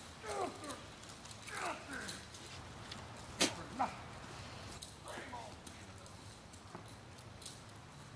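Distant human voices giving short cries that fall in pitch, several times. A single sharp click about three and a half seconds in is the loudest sound.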